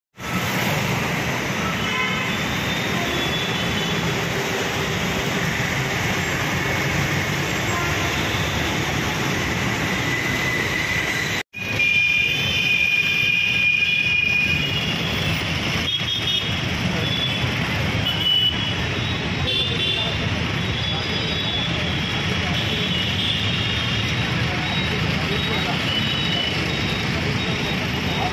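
Busy road traffic running steadily, with repeated short vehicle horn toots and indistinct voices of people in the crowd. The sound cuts out for a split second about eleven seconds in.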